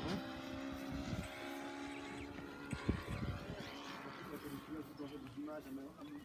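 Brushless motors of FPV racing quadcopters armed and idling on the ground, a steady motor whine that holds throughout and eases slightly near the end.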